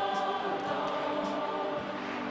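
A group of voices singing together, holding long notes.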